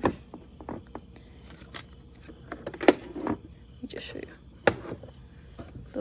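Handling noises in a car's front compartment: scattered light clicks and knocks of plastic parts being moved, the sharpest about three seconds in and again near five seconds, with a faint murmured voice between them.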